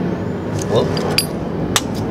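Two sharp clicks about half a second apart, from a small metal CVT roller weight and a digital pocket scale being handled, over a steady low hum.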